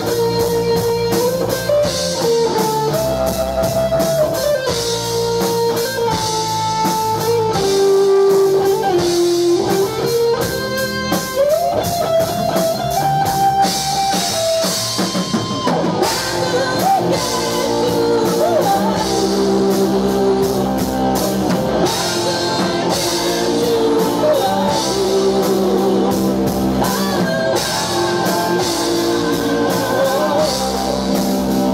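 Live rock band playing: electric guitar carrying the melody over bass and drums for the first half, then a woman's lead vocal comes in about halfway through.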